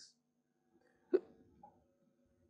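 One short throat sound from a man, about a second in, just after the last spoken word trails off.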